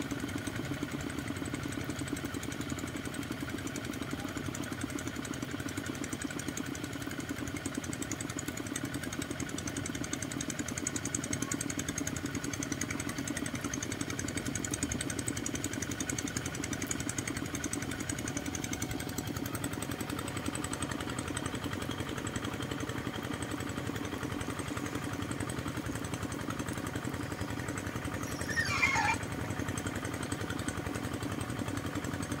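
Single-cylinder diesel engines of two-wheel hand tractors running steadily at working speed as they drag levelling boards through a flooded rice paddy. Near the end, a short high call rises and falls over the engine sound.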